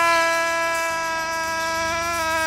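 A single long, held note at one steady pitch, full of overtones, sagging very slightly in pitch toward the end.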